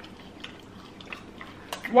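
Close-miked chewing of battered fried oysters: a few faint soft mouth clicks and smacks, with a voice starting at the very end.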